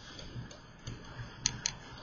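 Light, irregular clicks of a stylus tapping on a pen tablet while writing, with two sharper clicks close together about a second and a half in.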